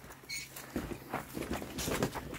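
Rustling and light knocks of folding camp chairs and gear being handled and carried, with a brief high squeak about a third of a second in.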